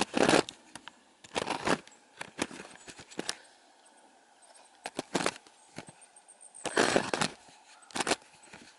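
Handling noise from a camera being set down and shifted about on a rough stone wall: irregular scrapes and knocks a second or so apart, with quiet gaps between.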